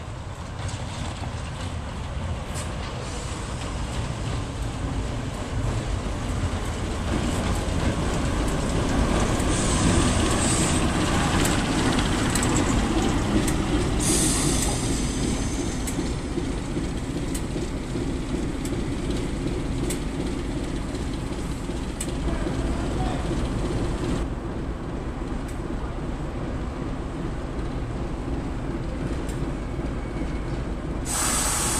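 Class 08 diesel shunter 08622's English Electric six-cylinder diesel engine running as the locomotive moves along the station tracks, growing louder to its closest roughly ten seconds in. A brief hiss comes at about fourteen seconds. About three-quarters of the way through the sound changes to a more distant diesel locomotive.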